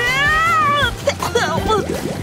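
A cartoon character's high-pitched voice: one long wail that rises and falls over about the first second, followed by short, choppy vocal sounds, over background music.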